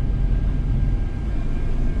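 Steady low rumble of a boat's twin inboard engines heard inside the wheelhouse, with a faint high steady whine over it.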